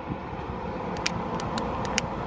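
Steady outdoor background noise of road traffic, with a few faint, sharp clicks in the second half.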